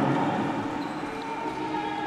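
Indoor basketball arena ambience: a steady haze of crowd and court noise, with a thin steady tone coming in about halfway.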